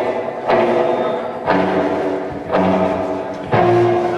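Live rock band opening a slow song: full chords struck about once a second with a sharp attack, each left ringing into the next.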